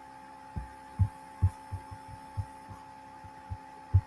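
A steady faint electrical hum with a series of short, soft low thumps at uneven intervals, about a dozen in all, the loudest about a second and a second and a half in and just before the end.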